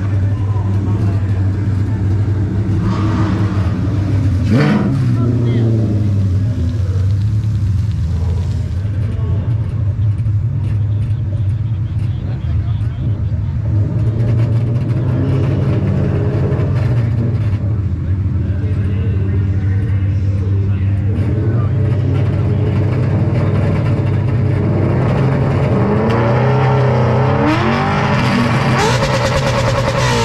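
A drag-race Mustang's Ford Coyote 5.0 V8 idling loud and lumpy at the starting line, with a quick rev about four and a half seconds in. Near the end the engine revs up and down repeatedly as the car stages for launch.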